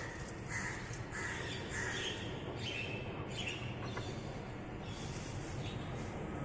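Birds calling in short, repeated calls, about two a second, over a low steady hum.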